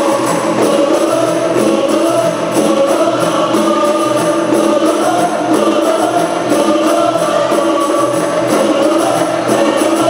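A group of voices singing together in unison over a steady, regular beat of rebana frame drums.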